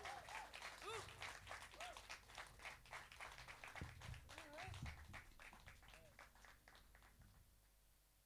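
Audience applause with scattered whoops and cheers, thinning out and dying away over about seven seconds. A couple of low thuds sound midway through.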